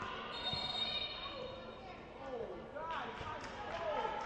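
Futsal play in an echoing gym: shoes squeak on the court floor and the ball is struck a few times, with players calling out.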